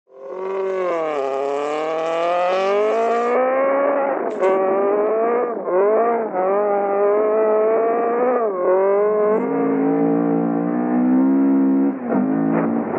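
Datsun 1600 (P510) rally car's engine at full throttle, the note climbing through the revs and dropping sharply at each gear change, about twice. A short sharp crack comes a little past four seconds in, and the note runs lower and steadier over the last few seconds.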